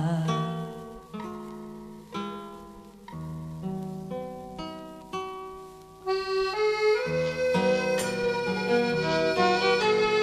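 Instrumental break of a song with no singing: chords change about once a second, each fading away, until about six seconds in the band comes in fuller and louder with held chords.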